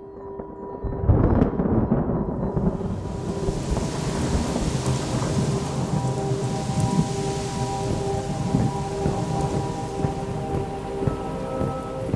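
A thunder rumble about a second in, then steady heavy rain hiss, over sustained droning tones of a film score.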